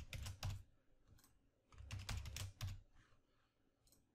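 Typing on a computer keyboard: a quick run of keystrokes, then a second short run about two seconds in.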